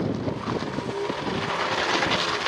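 Mercedes-Benz W124 saloon's engine running as the car manoeuvres on a paved and gravel lot, with wind noise on the microphone.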